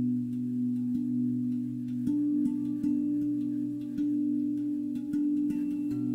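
Calm ambient background music of held low tones, with a new note coming in about every second.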